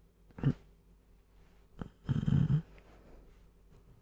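A man's sleepy breathing sounds: a short low snort, then about a second and a half later a rough, low snore-like sound lasting about half a second.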